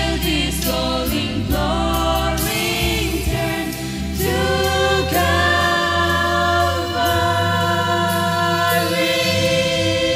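Mixed group of men and women singing a Christian song together into microphones, the notes moving in the first few seconds and then held long in the second half, over a steady low accompaniment.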